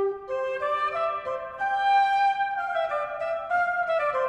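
Early Baroque ensemble of cornetts and sackbuts opening a six-part sonata: several wind voices enter together at once and hold overlapping sustained notes that change in slow steps.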